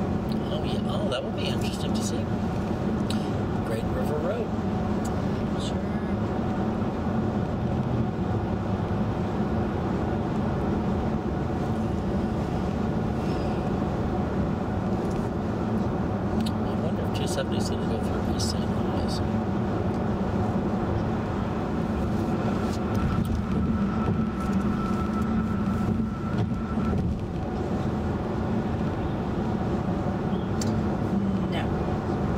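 Steady road and tyre noise inside the cabin of a 2011 VW Tiguan SEL 4Motion cruising at highway speed, a low even drone, with a few faint light ticks.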